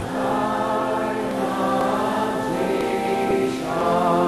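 Church congregation singing a slow hymn in Polish, in long held notes, moving to a new note near the end.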